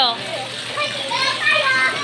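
Children's voices: kids talking and calling out in high voices.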